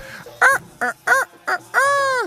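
Rooster crowing: four short notes that each rise and fall, then a longer drawn-out note near the end.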